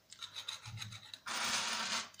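Small needle file rasping along the edge of a thin, soft pure-tin pendant: a run of quick short strokes, then a longer, louder scrape in the second half.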